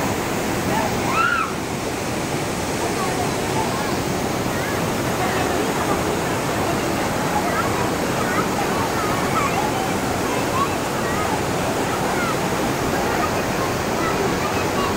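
Loud, steady rush of water falling and cascading over rocks at a waterfall, with faint voices of people calling and talking scattered through it.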